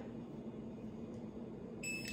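Heaflex remote dog training collar giving a single short, high electronic beep near the end as it is switched on.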